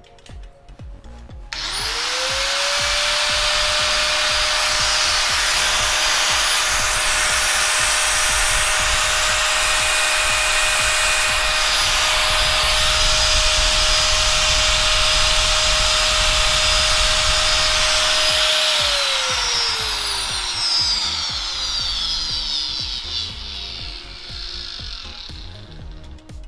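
Hitachi 100 V, 720 W angle grinder running unloaded with no disc fitted. It is switched on about a second and a half in and spins up within a second to a loud, steady whine. Near two-thirds of the way through it is switched off and the whine falls as it winds down.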